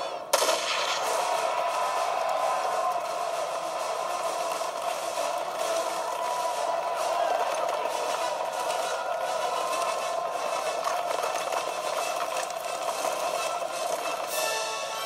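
Film battle soundtrack of gunfire and explosions played through a portable DVD player's small speaker. It starts suddenly just after a brief gap and goes on as a dense din of many rapid blasts.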